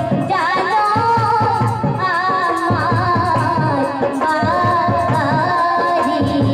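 A woman singing a Bhawaiya folk song of North Bengal into a microphone, her melody wavering and ornamented, over a steady drum beat.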